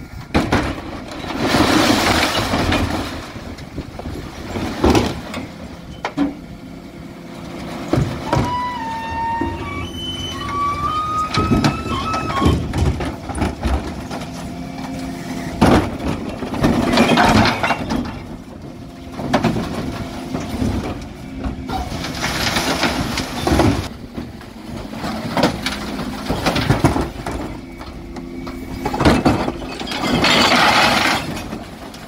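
Refuse lorry's rear bin lift tipping wheelie bins of glass, tins and plastic into the hopper, the contents crashing and clattering in repeated bursts several times, over the steady hum of the truck's engine and hydraulics.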